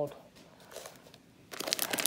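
Plastic pasta bag crinkling as it is handled, with faint crackles at first and a loud burst of crinkling about one and a half seconds in.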